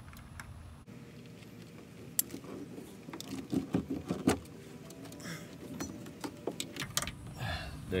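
Scattered clicks and knocks as a side mirror is worked loose and lifted off a bare car door, its base and fittings knocking against the door's sheet metal.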